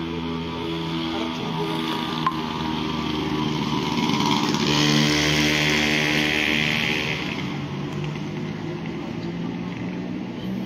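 A motor vehicle engine running nearby, a steady hum that swells louder for a few seconds around the middle before easing off.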